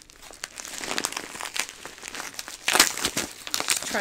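Yellow padded bubble mailer crinkling and crackling as it is pulled open by hand: a run of irregular plastic crackles, with a louder burst about three seconds in.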